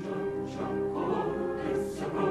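Background choral music: a choir singing held notes, picking up again right at the start after a brief lull.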